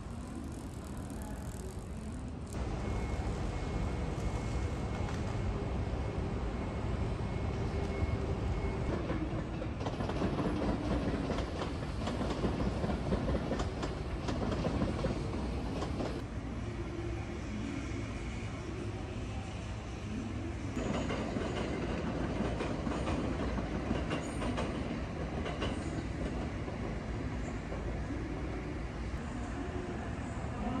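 A train running through a station's rail yard, heard against steady city background noise; the sound changes abruptly several times, and a faint steady whine sounds for a few seconds early on.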